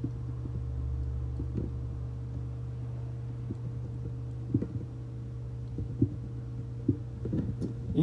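Steady low electrical hum of the recording's background, with a few faint short knocks scattered through it, the most distinct about four and a half and six seconds in.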